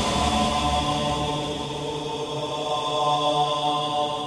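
Background music: a held, droning chord of several steady tones.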